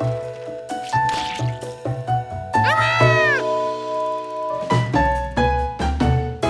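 Light cartoon background music, with a short squeal that rises and falls in pitch about three seconds in.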